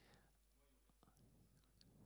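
Near silence in a lecture hall: faint room tone with a few faint clicks and a little whispered, murmured talk.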